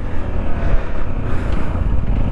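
Sinnis Terrain 125's single-cylinder engine running steadily at low speed, a low rumble with wind noise on the microphone.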